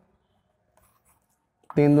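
Faint scratches of chalk on a chalkboard as a number is written, then a man's voice near the end.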